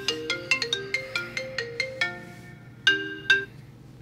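Smartphone ringing for an incoming call: a ringtone melody of short, quickly fading pitched notes that stops about three and a half seconds in.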